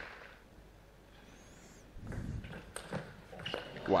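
Table tennis ball being hit by rackets and bouncing on the table in a rally: a run of sharp, irregular clicks, a few each second, starting about halfway through.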